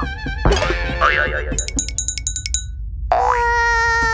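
Cartoon sound effects over background music: wobbly, springy boing-like pitch glides, then a quick run of high clicks in the middle, and a held tone that slides up into place near the end.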